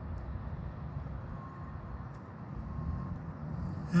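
Steady low background rumble, with a faint thin hum in the middle.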